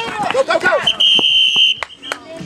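A whistle blown once: a shrill, steady tone lasting just under a second, cutting in about a second in after shouts of 'go'.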